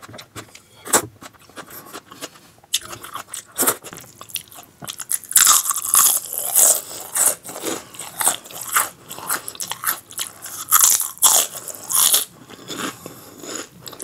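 Close-miked eating sounds: a person chewing and smacking with food in the mouth, in a run of short wet clicks that grow busier and louder about halfway through.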